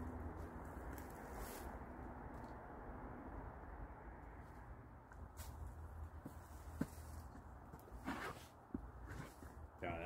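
A few short, faint scrapes and knocks from a garden fork working compost in a wooden bin, over a steady low background hiss.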